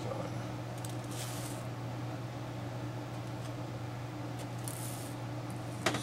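Strapping tape pulled off the roll in two short rips, about a second in and again near the end, over a steady low electrical hum.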